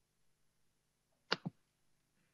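A quick pair of sharp clicks about a second and a half in, over an otherwise near-silent line with a faint hum.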